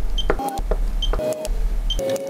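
Portable rebound hardness tester beeping as it takes readings on the steel of an impact wrench's mechanism: three short high beeps about a second apart, with lower tones and light clicks from the impact probe between them. A steady low hum runs underneath.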